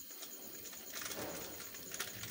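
Thick chicken curry masala bubbling and spluttering in a steel pan on a gas burner: scattered small pops, with a low blurp of bubbling gravy about a second in.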